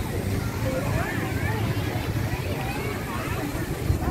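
Crowd babble: many voices talking at once, none of them clear, over a steady low rumble.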